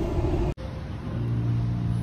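Low rumble inside a car, cut off sharply about half a second in. It is followed by a steady low hum with a faint pitch.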